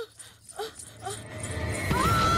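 A woman's short gasping, whimpering breaths repeat a few times a second. A low rumble swells near the end, and a high scream breaks out at the very end.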